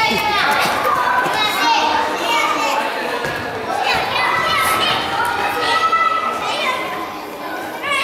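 Young children shouting and calling out to each other during a soccer game, many high voices overlapping, echoing in a gymnasium hall.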